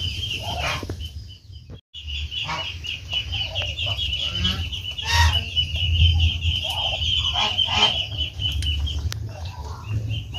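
Poultry calling. A steady, high, rapidly pulsing call runs on from just after a brief dropout about two seconds in until shortly before the end.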